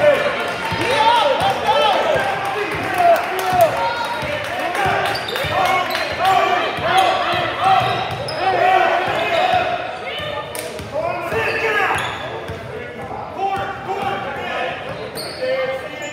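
Basketball game sounds on a hardwood gym floor: the ball being dribbled and players' sneakers squeaking in many short chirps, with voices calling out across the hall.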